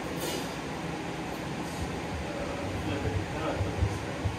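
Steady background rumble of a band room with instruments and amplifiers on, a short hiss in the first half-second, and a few soft low thuds near the end.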